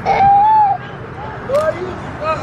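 A high-pitched voice calls out once in a drawn-out exclamation lasting about half a second just after the start, then gives a shorter, softer call about a second and a half in.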